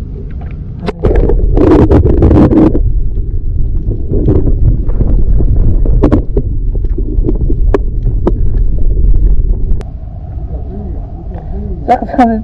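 Muffled low rumble of water moving around a submerged camera, louder from about a second in until near the end, with scattered small knocks and clicks.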